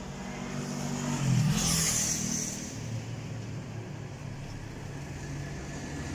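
A motor vehicle engine running, rising in pitch and loudness about a second in, then settling back to a steady drone.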